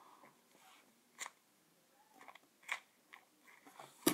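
Near silence with a few faint, short clicks and rustles from hands handling a small foam squishy toy.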